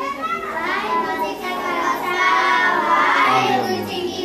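A group of children singing a prayer together in unison, with long drawn-out, gliding notes.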